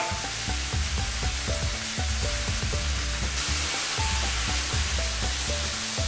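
Bone-in chicken legs sizzling steadily in hot oil in a frying pan, coated in mint chutney as they finish pan-grilling at about three-quarters cooked.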